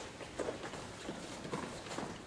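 Footsteps of several people walking on a hard floor, an irregular scatter of light taps and scuffs.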